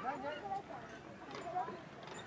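A few light knocks from the hanging wooden logs of a playground chain bridge as a small child steps across, under faint voices in the background.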